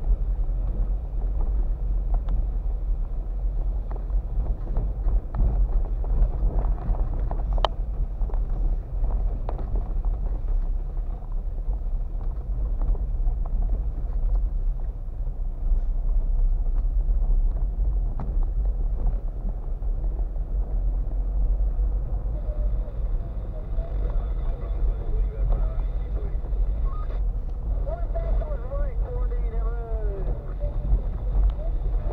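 Steady low rumble inside a car's cabin as it drives along a rough, potholed road, with a single sharp knock about eight seconds in.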